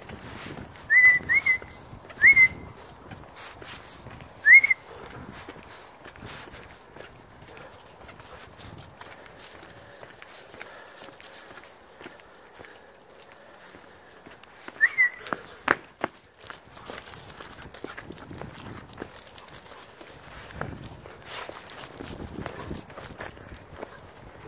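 A person whistling short, rising-then-falling notes to call a dog: several in the first five seconds and one more about fifteen seconds in. Footsteps on grass and path continue between them.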